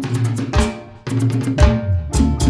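Guaracha band kicking off a song: drum kit hits with low bass notes come in together, break off briefly about a second in, then return in a steady dance rhythm.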